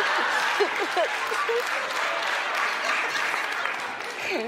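Studio audience applauding, thinning out toward the end, with a few brief words spoken over it early on.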